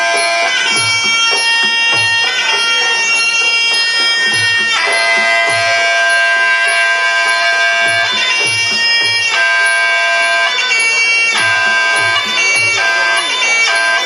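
Traditional Muay Thai sarama music: a reedy Thai oboe (pi) plays a winding, held melody over hand-drum beats, the music that accompanies the fighters' pre-fight wai kru ritual.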